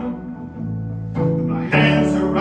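Amplified guitar played solo through a small amp: notes ringing on, with a new chord struck a little past halfway and a louder one near the end.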